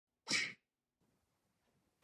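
A single short, sharp breath noise from a man, a sudden burst about a quarter second in that lasts about a third of a second.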